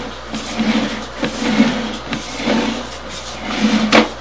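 Sewer inspection camera's push cable being pulled back out of a drain line, giving an irregular series of rubbing, scraping bursts about twice a second, with a sharp knock near the end.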